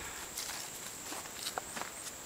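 Faint footsteps of a person walking slowly on the ground outdoors, a few soft steps.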